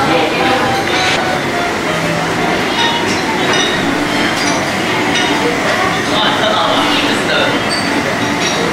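Busy breakfast-room din: a steady wash of indistinct chatter with crockery and cutlery clinking throughout.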